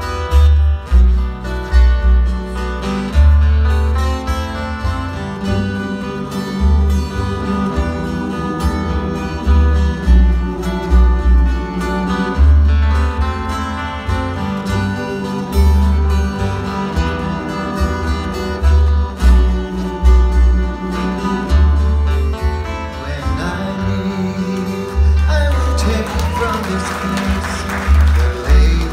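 Live acoustic Hawaiian string band: plucked upright bass notes under strummed ukulele and guitars in a steady rhythm, with a voice starting to sing near the end.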